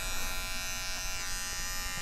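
Electric hair clippers buzzing steadily as they trim a man's beard.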